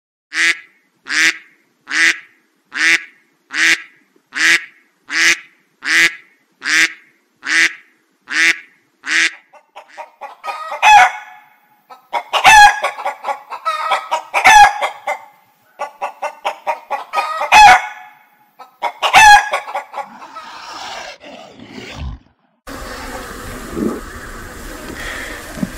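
Chicken clucking: first a run of about a dozen short, evenly spaced calls, then a louder, busier stretch of clucks with several loud squawking calls. Near the end the calls stop and a steady noise takes over.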